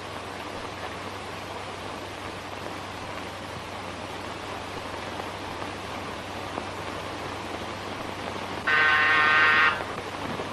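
Steady hiss of an old optical film soundtrack, then an electric doorbell buzzer sounds once, a loud steady buzz lasting about a second near the end.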